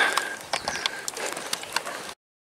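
Outdoor street ambience with many scattered small clicks and ticks and a faint high whistle near the start and again in the middle. The sound drops out abruptly at the very end.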